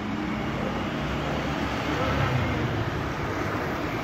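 Street traffic: a motor vehicle passing, its low rumble swelling from about a second in and easing off near the end.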